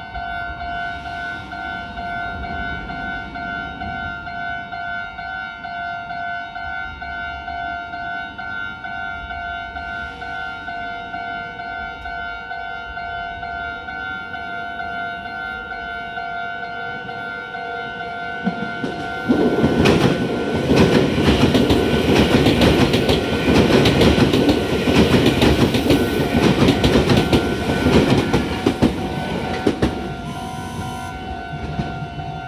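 Japanese railway level-crossing alarm ringing steadily, an evenly repeating two-tone electronic ding. About 19 seconds in, an electric train passes, much louder than the alarm, its wheels clacking rapidly over the rail joints until the end.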